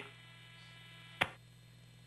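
Faint steady electrical hum on the audio line, with a single sharp click a little past a second in.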